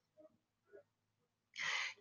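Near silence for about a second and a half, then a short breath drawn in by the female narrator near the end, just before she speaks again.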